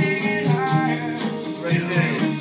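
A rock band playing live: acoustic guitar, electric bass and drums in a steady groove.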